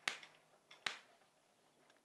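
Two faint, sharp taps of chalk against a chalkboard, a little under a second apart, as writing is finished.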